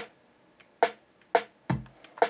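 Programmed drum-machine pattern for a dancehall beat playing back in FL Studio: a few sharp, short hits spaced in a syncopated rhythm with silent gaps between them, and a deeper kick hit near the end.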